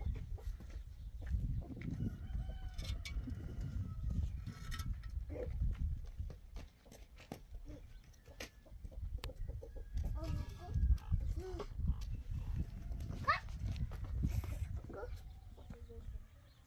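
Chickens clucking, with a few short calls scattered through, one rising sharply near the end, over a steady low rumble.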